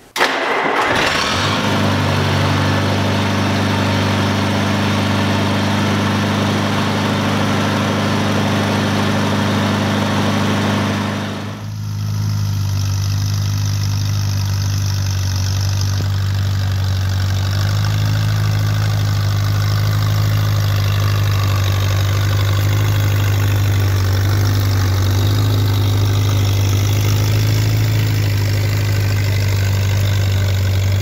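A 1957 Allis-Chalmers D-14's four-cylinder engine starts right at the beginning and runs steadily. After a short dip about eleven and a half seconds in, it runs on under load, pulling a three-bottom snap-coupler plow.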